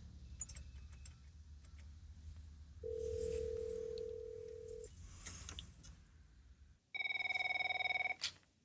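A call being placed from a payphone: a few faint clicks, then a steady two-second ringback tone about three seconds in. Near the end an electronic office telephone rings with a loud warbling trill.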